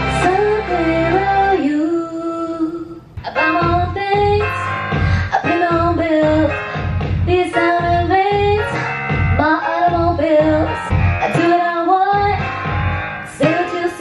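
A woman singing into a handheld microphone over a karaoke backing track. About three seconds in, a held line ends and, after a brief dip, a new song starts, with sung phrases over a steady beat.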